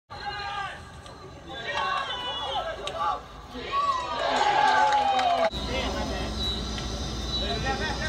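People's voices calling and shouting, with one long drawn-out call falling in pitch about four seconds in. About five and a half seconds in the sound changes abruptly, and a low steady rumble sits under the voices.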